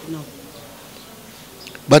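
A short pause in a man's speech, with only faint, even background noise. His voice trails off just after the start and he begins speaking again near the end.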